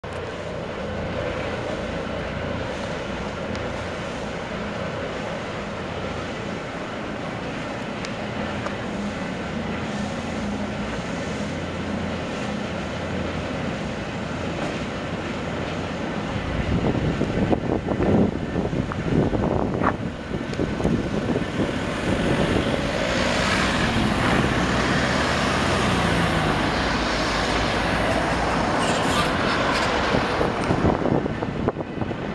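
Road traffic noise, steady at first and growing louder about halfway through, as a vehicle comes past close by near the end.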